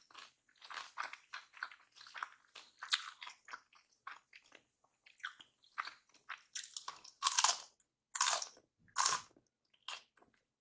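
Close-miked chewing of spicy kimchi fried rice: a run of quick, small, wet crunches, then a few louder, separate crunching bites in the last few seconds.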